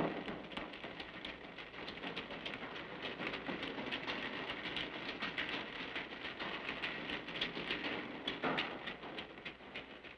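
Water splashing and pattering in a concrete storm drain tunnel: a dense run of quick, sharp splashes over a steady wash of water. It swells over the first eight seconds or so, then fades away near the end.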